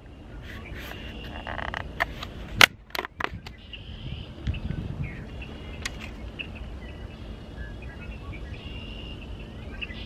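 Snap-on plastic lid of a nightcrawler bait cup being pried off, giving a few sharp plastic snaps between about two and three seconds in, the loudest near the middle. After that comes a steady outdoor background with faint chirping.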